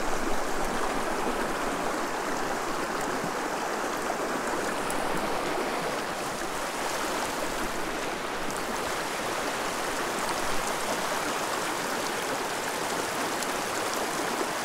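Small mountain creek running over rocks and riffles: a steady rushing of water.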